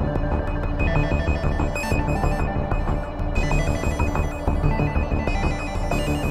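Electronic music played live on a modular and hardware synthesizer rig: a rapidly repeating high-pitched note pattern over a pulsing low bass.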